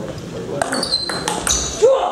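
Table tennis rally: the plastic ball clicks in quick succession off the bats and the table. Short high squeaks of shoes on the sports-hall floor come in the second half.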